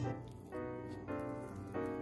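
Background piano music, with a new chord struck every half second or so.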